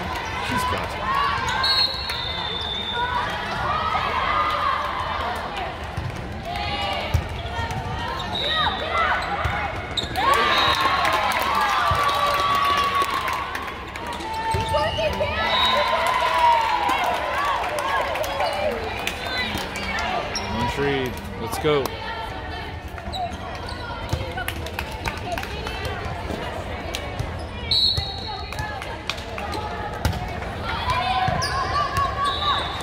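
A volleyball bouncing on the hard court floor amid players' shouts and chatter in a large hall. There are four short, high whistle blasts.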